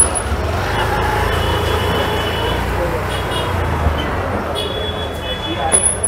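Busy street ambience: motor scooters and motorbikes running past, a steady wash of traffic noise, and the chatter of passers-by.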